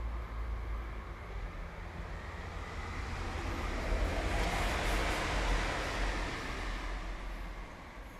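A road vehicle passing, its noise swelling to a peak about halfway through and then fading away, over a steady low rumble.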